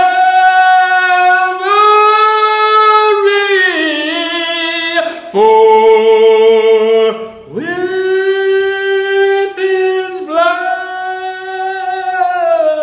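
A man singing unaccompanied, holding long notes of a second or two each with short breaks between them.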